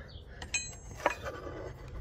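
Steel wrenches being handled on a wooden table: a light metal clink with a brief ring about half a second in, then a second tap about a second in, with soft handling noise between.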